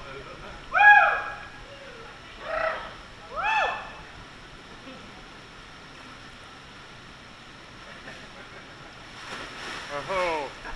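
Three short wordless hooting calls from a person's voice in the first four seconds, the first one held briefly and the loudest, over the steady rush of water. A splash comes near the end.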